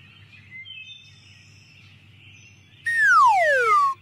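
Faint outdoor nature ambience with small bird chirps, then near the end a loud whistle slides steeply down in pitch for about a second: a cartoon-style falling whistle sound effect.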